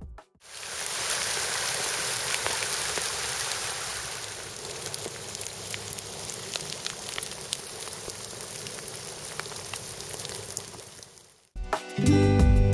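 Hail falling on a gravel path and canal water: a dense, steady patter dotted with the sharp ticks of single hailstones striking. It cuts off near the end.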